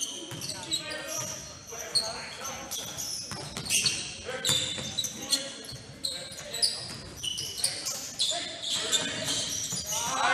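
A basketball being dribbled on a hardwood gym floor, with sneakers squeaking in short, sharp chirps as players cut and stop, echoing in the gym.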